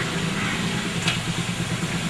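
A motor engine running steadily at idle, an even low hum with no change in pitch.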